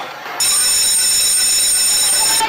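Electric school bell ringing as a stage sound effect: a loud, high, steady ring that starts suddenly about half a second in.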